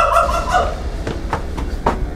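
A man howling like a dog: one drawn-out, nearly level high call that fades out early on, followed by a few sharp clicks.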